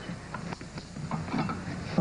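Faint, scattered clinks and knocks of kitchen items being handled: metal stove parts on the counter and dishes at the sink.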